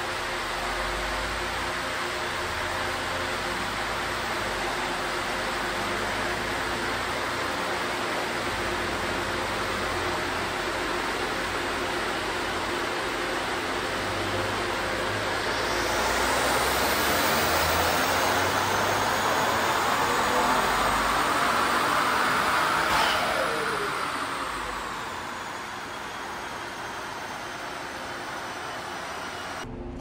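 Ford Explorer ST's 3.0-litre twin-turbo V6 on a chassis dyno during a power run on its first 91-octane tune revision. It runs steadily for about half the time, then goes to full throttle: for about eight seconds the engine note and a whine climb in pitch and loudness. Then it lets off suddenly and winds down.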